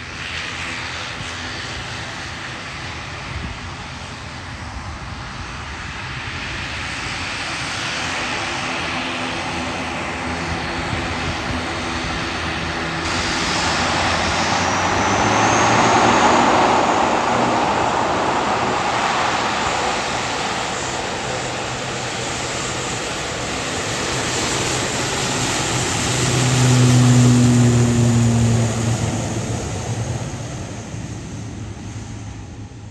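The twin turboprop engines of an ATR 72-500 airliner running as it moves along the runway, a steady propeller drone with a thin turbine whine on top. The sound swells about halfway through, then again near the end with a strong deep propeller hum that is the loudest part.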